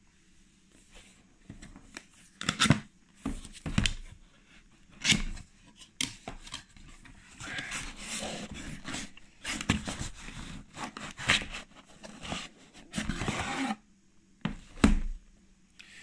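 Cardboard box being opened and handled by hand: the lid and sides scraping and rustling, with several sharp knocks, as a fabric-covered hard carry case is drawn out of it.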